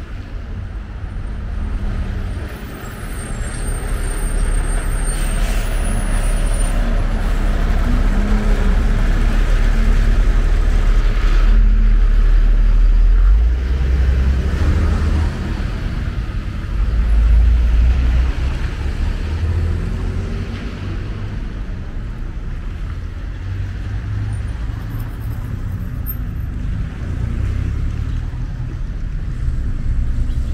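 Street traffic on a wet road: cars passing with a hiss of tyres on wet pavement and a low rumble, swelling over the first dozen seconds and again briefly a little later.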